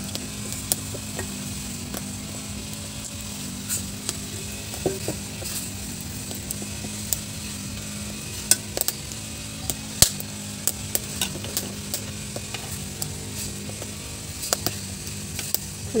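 A pot of fish and vegetable soup bubbling over a wood fire while a metal ladle stirs it, with scattered sharp clicks and taps from the ladle and the burning firewood. A low steady hum runs underneath.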